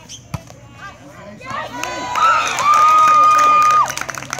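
A volleyball struck once, a sharp hit early on, then players and onlookers cheering and shouting as the rally ends. The loudest sound is one long, high, steady shout held for about a second, which cuts off suddenly just before the end.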